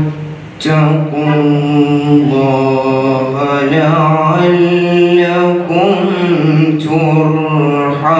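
A young man's solo Quran recitation in Arabic, chanted in tajweed style: long held, melodic vowels that glide slowly up and down in pitch, with a short breath pause near the start.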